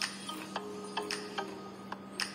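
Crispy banana chips being chewed close to the microphone: a quick, irregular run of sharp crunches, several a second, over a steady low hum.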